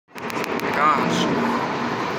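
Steady road and engine noise inside a car cruising on the freeway, with a few clicks at the start and a brief voice-like sound about a second in.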